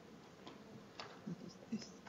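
Faint sharp clicks and taps of chalk on a blackboard as someone writes, a cluster of them in the second half.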